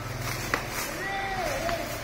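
Clear plastic film crinkling and rustling as a toy box is unwrapped by hand, with a couple of sharp clicks. A short high-pitched voice sound falls in pitch from about a second in.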